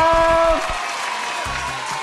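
Applause with background music, marking a correct answer; a man's voice finishes a word in the first half second.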